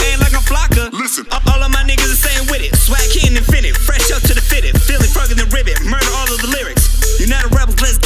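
Hip hop track with a rapped vocal over a heavy bass beat. The bass and beat cut out for a moment about a second in, then come back.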